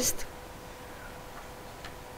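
A pause in speech: a woman's last word trails off at the start, then steady room tone with a faint constant hum-like tone and two faint ticks near the end.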